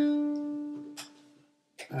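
A single note plucked on a traditional Spanish acoustic guitar, ringing out and fading away over about a second and a half, with a faint click about a second in.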